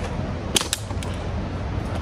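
Metal fishing-rod holder stake being worked into the ground: a quick pair of sharp clicks a little over half a second in and a fainter one about a second in, over a steady low rumble.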